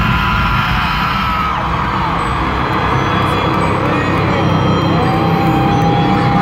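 Amplified music from an arena sound system at a concert opening, with the crowd screaming and cheering over it; two long, held screams stand out, one at the start and one near the end.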